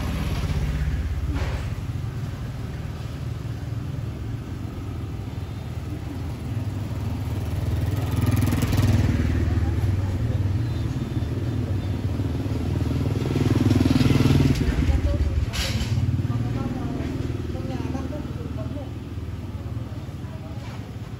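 Street traffic: motor vehicle engines running past, the rumble swelling twice as vehicles go by, with a sharp knock late on.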